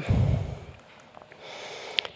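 Breath from the speaker hitting a handheld microphone: a low burst of air on the mic lasting about half a second. After that comes a soft intake of breath and a small mouth click just before she speaks again.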